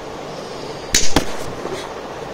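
A brief swish followed by two sharp hits about a quarter of a second apart, about a second in.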